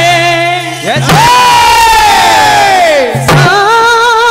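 A man's loud voice through a microphone holding long sung notes in a bhajan. A new note starts about a second in and falls away near three seconds, over a steady low drone.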